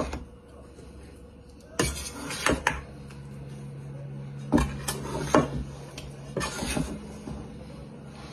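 A spoon and spatula knocking and scraping against a metal mixing bowl every second or so while soaked bread cubes are turned over. A low steady hum runs underneath from about three seconds in.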